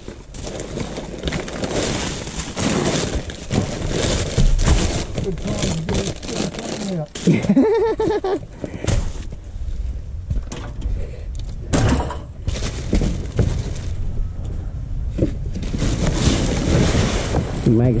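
Rubbish being rummaged through by hand close to the microphone: plastic rubbish bags and paper rustling and crinkling, with irregular clatters and knocks of objects against a metal skip bin. One sharper knock comes about two-thirds of the way through.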